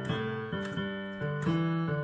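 Piano playing a country blues left-hand bass pattern: low notes struck one after another in a steady, repeating rhythm.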